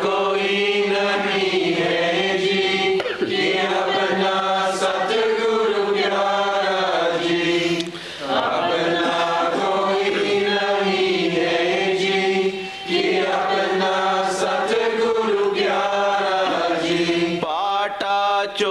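A voice chanting verses of a devotional hymn to a slow melody in long held phrases, pausing briefly for breath about every four to five seconds, over a steady low drone.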